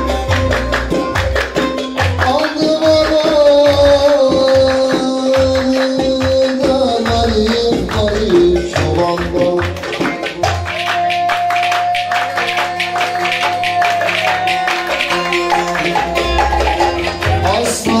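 Ankara oyun havası folk dance music with saz and percussion, over which the dancers' wooden spoons (kaşık) clack in a quick, steady rhythm. Long held melody notes run across it.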